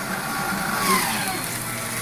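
Small electric paper shredder motor running with a steady hum, and a whine that slides down in pitch about a second in.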